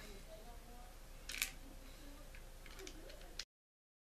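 Small metal clicks and a short scrape from the rotor nut being fitted and threaded by hand onto the main shaft of a Penn 450SSG spinning reel. One sharper click comes about a second and a half in and a few lighter ticks follow near the end, before the sound cuts off suddenly.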